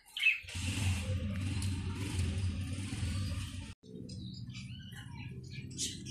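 Caged pigeons: short bird chirps over a steady low noise that cuts off suddenly a little past halfway through, then goes on more quietly.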